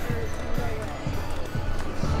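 Music playing with faint voices behind it, and low thumps about twice a second.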